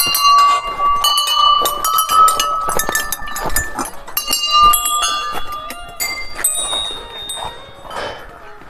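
Small brass temple bells rung by hand, struck again and again in quick succession so that their ringing tones overlap.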